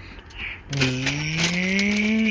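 A man's voice holding one long, drawn-out vowel that slowly rises in pitch, starting about two thirds of a second in: a coaxing call to a dog waiting for a treat.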